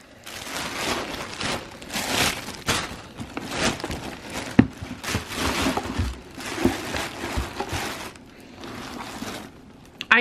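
Thin plastic wrapping crinkling and rustling in irregular bursts as a handbag is pulled free of it, with one sharp click about halfway through. The rustling dies down for the last couple of seconds.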